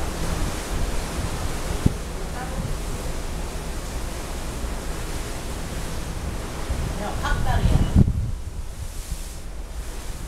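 Wind buffeting the microphone, a low rumble over the steady rush of the sea, on an open ship's deck; the rush thins out about eight seconds in. A single light click comes near two seconds.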